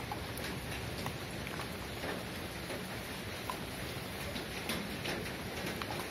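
Dogs and kittens eating dry kibble off a concrete floor: many small, irregular crunches and clicks over a steady hiss.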